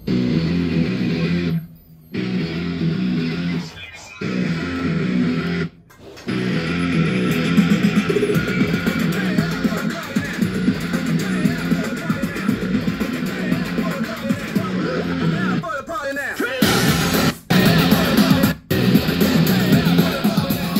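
Guitar music playing from a CD on a Kenwood SJ7 mini hi-fi system, heard through its speakers. The music breaks off briefly three times in the first six seconds and twice more near the end.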